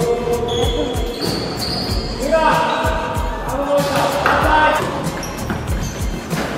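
Basketball game on a hardwood gym floor: the ball bouncing repeatedly, with short high squeaks and players' voices calling out.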